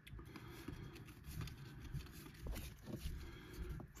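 Quiet handling of a stack of baseball trading cards: faint slides and a few soft ticks of card stock as cards are moved through the stack, over low room noise.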